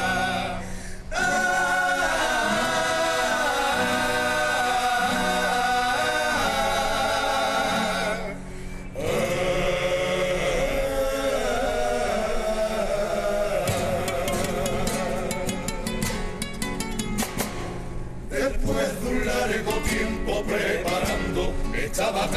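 Comparsa choir singing long held chords in harmony with Spanish guitar, breaking off briefly twice. From about two thirds of the way in, fast rhythmic guitar strumming comes to the front under the voices.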